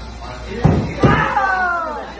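Thrown axe striking a wooden target board: two loud knocks less than half a second apart, the first about half a second in.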